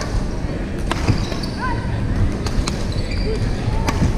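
Badminton play in an indoor sports hall: a few sharp racket-on-shuttlecock hits and short shoe squeaks on the court floor over a steady hall din of other games and distant voices.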